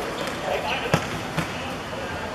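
A football kicked, giving a sharp thud about a second in, then a second, lighter thud shortly after, over players' calls.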